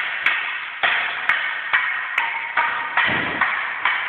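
Wooden sticks clacking against each other again and again in a stick-fighting sparring exchange, about two strikes a second, each ringing on in an echoing hall.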